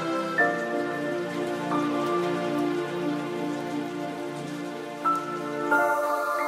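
Background music: slow, sustained chords and held notes that change every second or so, over an even hiss like falling rain.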